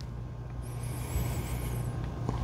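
Quiet room with a steady low hum, and faint sniffing as a glass of double IPA is held to the nose and smelled.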